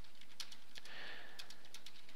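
Faint typing on a computer keyboard: a scatter of light, irregular key clicks over a steady low hiss.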